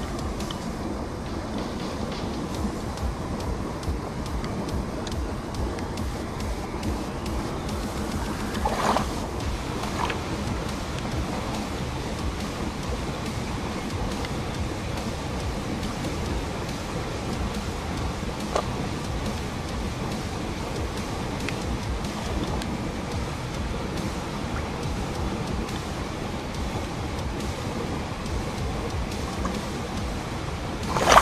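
Steady rushing of river water and wind buffeting a small action-camera microphone at the water's edge, with a short louder burst of noise about nine seconds in.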